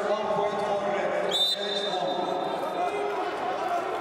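A referee's whistle blown once about a second in, a sharp start then a held high tone, signalling the start of the bout, over men's voices calling out in the hall.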